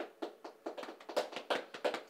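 A rapid, irregular series of light taps, sparse at first and then about five or six a second.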